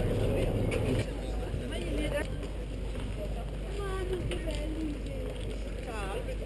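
Ferry engine humming steadily at the landing, cutting off abruptly about a second in, leaving a low rumble with the faint voices of people around.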